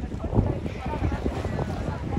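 Wind buffeting the microphone and sea water sloshing at the shallows, an uneven rumble with small knocks, under a faint hubbub of swimmers' voices.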